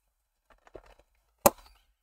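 Plastic snap clips on a modular paint-storage box being released: a few light clicks, then one sharp, loud snap about one and a half seconds in as a clip lets go.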